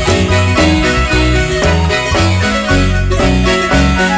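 Guatemalan marimba music: an instrumental melody of quick, rhythmic struck notes over a steady bass line.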